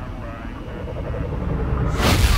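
Low rumbling sound effect from a logo sting. It grows steadily louder toward the end, building up to a hit.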